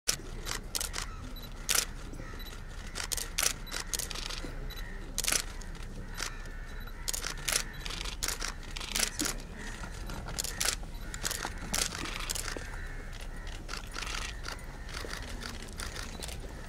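Press camera shutters clicking many times at irregular intervals, sometimes in quick runs, over a faint murmur of voices.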